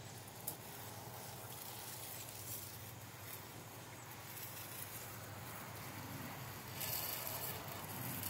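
Faint steady outdoor background noise, with a single click about half a second in and a brief burst of hiss about seven seconds in.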